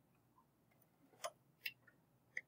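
Near silence, room tone with two faint clicks a little past halfway.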